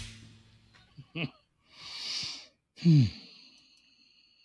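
The last note of a heavy rock song dies away, then a man lets out a long breathy sigh about two seconds in and a low, falling 'hmm' near the end.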